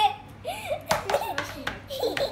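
Girls' quiet chatter and giggling, with a sharp clack or two about a second in as plastic pizza trays are swapped and set down on a wooden table.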